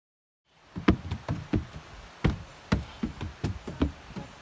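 Silence, then about half a second in, footsteps climbing wooden stairs begin: irregular knocks of shoes on the wooden treads, several a second.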